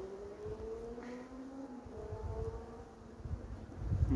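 Honeybees buzzing over an open hive: several steady hums at slightly different pitches, each drifting slowly up or down, over a low rumble.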